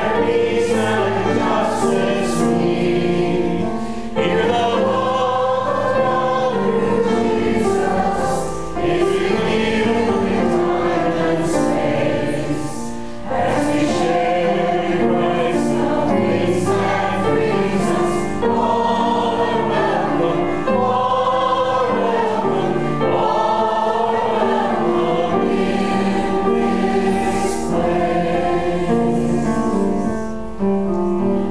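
A choir singing in harmony, many voices together in long sustained phrases with brief breaks between them.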